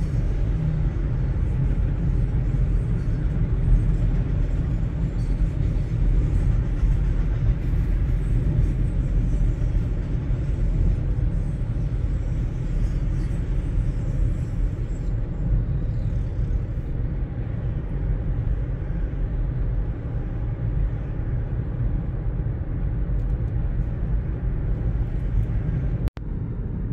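Steady road and engine rumble heard inside the cabin of a car cruising on a highway, deep and unbroken.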